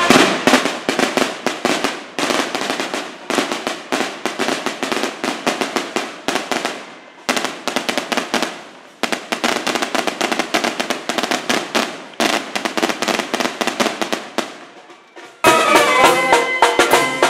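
Strings of firecrackers going off in rapid crackling runs, broken by a few short pauses. Near the end a brass band with sousaphone and trombones strikes up again.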